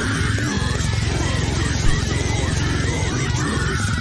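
Metal song playing, with heavily distorted guitars, fast, dense drumming and vocals singing the lyrics.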